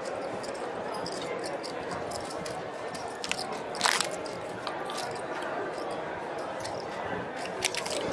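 Clay casino chips clacking as a dealer breaks down stacks and spreads them on the felt to count, with the sharpest clack about four seconds in, over the steady murmur of a casino floor.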